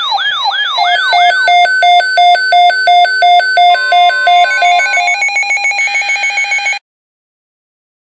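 Electronic siren and alarm tones: a fast repeating falling whoop, about three or four a second, changes about a second in to a quick run of alternating high and low beeps, then to a higher warbling tone that cuts off suddenly near the end.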